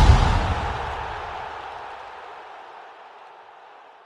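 An end-card sound effect: the tail of a deep hit with a hissing wash over it, fading steadily away.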